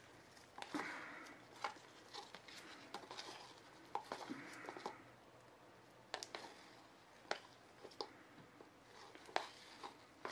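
Wooden stir stick scraping around the inside of a clear plastic mixing cup, getting the last of the epoxy resin out; faint, with a few sharp clicks as the stick taps the cup.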